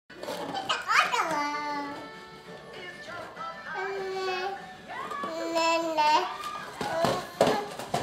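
A simple tune of long held notes that step from pitch to pitch, mixed with a baby's voice; a quick rising squeal-like glide comes about a second in.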